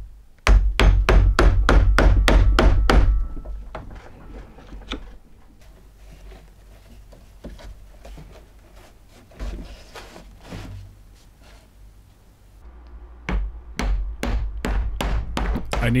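Mallet blows on a chisel chopping into green wood, a fast run of about four sharp strikes a second, then lighter scattered taps and knocks. Near the end comes a second run of strikes as a blade is driven into the top of a green log to split it.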